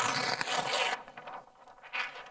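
A large sheet of easel chart paper being flipped over the top of the pad: a loud papery rustle for about a second, then fading.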